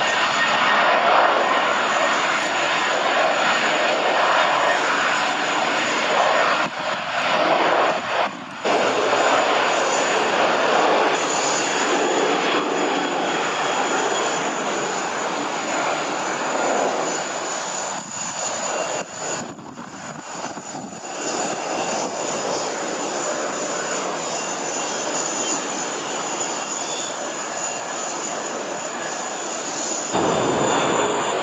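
Jet engines of a Boeing 737-800 at takeoff power during its roll and climb-out: a steady, loud rushing roar that briefly dips twice, about eight seconds in and again around twenty seconds.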